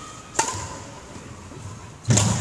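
A single sharp crack of a badminton racket striking a shuttlecock, about half a second in.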